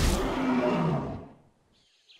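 Cartoon animal roar sound effect: a sudden loud roar that falls in pitch and dies away about a second in.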